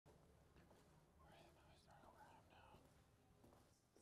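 Near silence: faint, indistinct voices murmuring over a low room hum.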